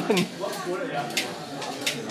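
About three sharp clicks, roughly a second apart, from a Lego Mindstorms-controlled pellet shooter firing at random and its pellets striking the targets. A crowd murmurs and laughs underneath.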